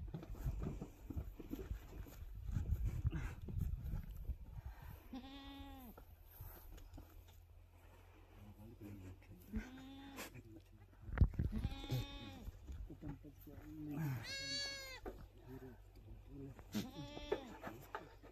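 Goats bleating: about five separate drawn-out bleats spaced through the clip. Wind gusts rumble on the microphone in the first few seconds and again about eleven seconds in.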